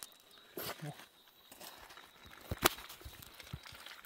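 A few low knocks and one sharp click about two and a half seconds in: hard objects set down on river pebbles.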